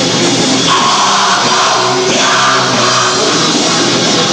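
Rock band playing live: electric guitars, a drum kit and a singer at the microphone, loud and dense.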